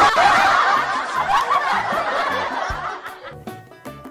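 A woman laughing hard into her hand, a long fit of laughter that trails off near the end.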